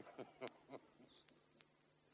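Near silence: a few faint short sounds in the first second, then faint clicks over a low steady hum.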